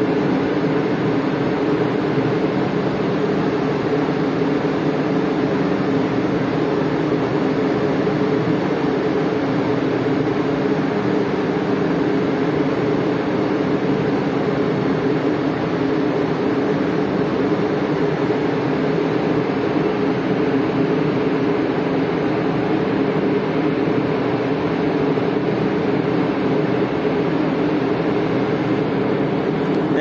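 Steady machinery drone of a tanker's engines and ship's machinery, heard from on deck during berthing: an even hum with a broad rush over it.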